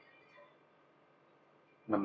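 Near silence: room tone during a pause in a man's speech, with his voice starting again near the end.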